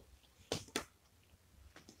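Two light clicks of small plastic LEGO pieces being handled, a quarter second apart about half a second in, with fainter ticks near the end.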